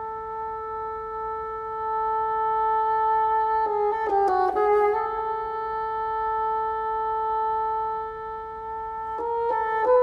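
Unaccompanied bassoon playing a long held high note that grows louder, a quick flurry of notes about four seconds in, then another long held note, with moving notes again near the end.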